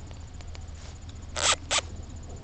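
Two quick scraping rustles about a quarter second apart, the loudest sounds here, from something being handled close to the microphone, over a low steady background hum.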